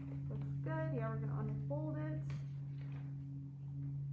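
Two short phrases from a woman's voice in the first half, then a few soft rustles of printer paper being creased and folded, over a steady low hum.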